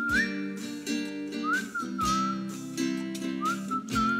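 Strummed acoustic guitar chords with a whistled melody gliding between notes over them, in an instrumental break of the song.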